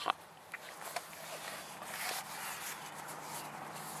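Waxed canvas bucksaw case being handled: a few light clicks in the first second, then a steady scratchy rustle of the stiff cloth.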